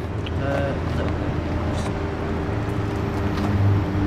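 A steady low hum and rumble of background noise, with a brief snatch of a voice about half a second in.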